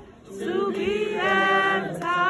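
A group of voices singing a cappella, holding long notes with vibrato after a brief dip at the start.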